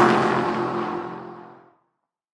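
Car drive-by sound effect: an engine note with a whoosh sweeps past, its pitch dropping at the start, then fades away, gone shortly before the end.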